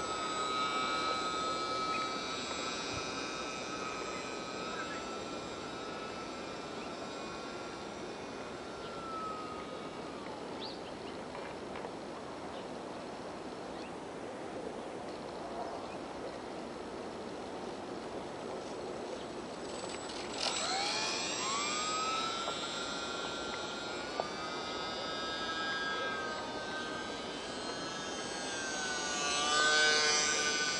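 Brushless electric motor and propeller of a UMX micro J-3 Cub RC plane whining in flight. It fades away as the plane flies off, rises sharply in pitch about two-thirds of the way through as the throttle comes up, and grows louder with wavering pitch as the plane passes close near the end.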